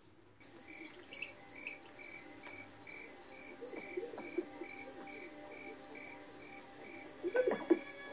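Crickets chirping steadily, about two and a half high chirps a second, as night-time ambience on a film soundtrack played through a TV's speakers, with a couple of brief lower sounds near the end.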